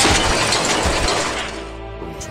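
A sudden crash-like sound effect that comes in at once and fades away over about two seconds, over background music.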